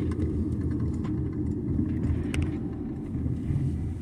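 Steady low rumble of a car driving, heard from inside the cabin, with a faint click about two and a half seconds in.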